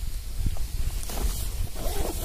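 Rustling of a sleeping pad and tent fabric being handled, strongest about a second in and near the end, over a steady low rumble.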